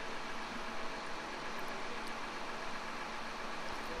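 Faint, steady engine hum with a hiss over it, consistent with a concrete pump truck's diesel idling while pumping is paused for screeding.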